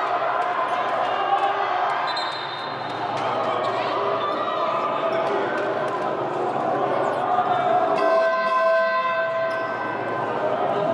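Basketball being bounced on an arena court, with voices in the hall. A steady tone sounds for nearly two seconds near the end.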